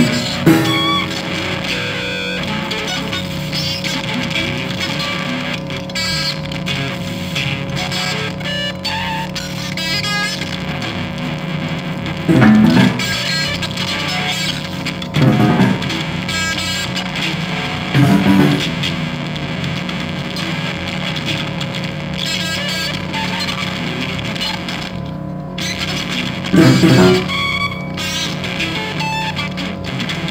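Free-improvised music: electric guitar through effects and distortion over a steady electronic drone, with dense crackling texture. Four louder low notes stand out a few seconds apart, the last near the end.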